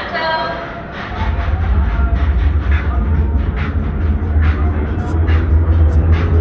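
Roller coaster train rolling along its track through a tunnel: a heavy, steady low rumble starts about a second in, with sharp clacks every half second or so.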